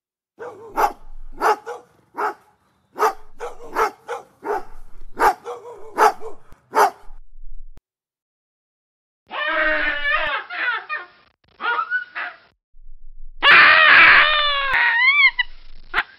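A dog barking, about ten short barks in quick succession over the first seven seconds. After a pause, a baboon gives a series of high, wavering calls that rise and fall in pitch, loudest near the end.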